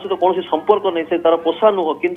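Speech only: a voice talking without pause.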